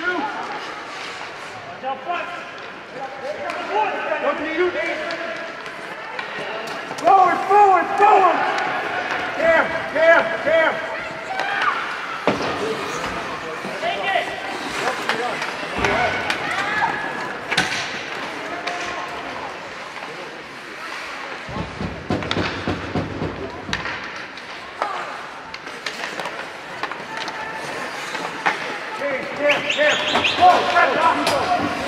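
Indistinct spectators' voices calling out and shouting at a youth ice hockey game, loudest a third of the way in, with sharp clacks and thuds of sticks, puck and boards scattered through.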